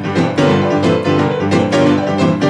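Boogie-woogie piano duet: a grand piano and a digital stage piano playing together, a steady low bass figure under quick, dense right-hand notes.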